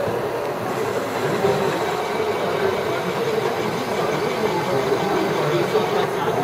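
LEGO motors and gear trains running steadily, with a continuous mechanical whir and clatter as the haunted house's motorised doors swing open.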